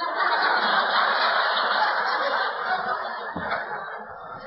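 Audience laughing, setting in at once and fading toward the end.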